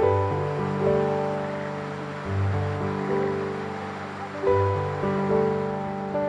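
Soft instrumental background music: gentle chords struck every second or two, each fading away.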